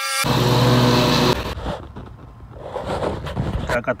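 Bobcat XRZ Pro RS zero-turn mower's engine running: loud and steady for the first second and a half, then dropping to a much fainter rumble.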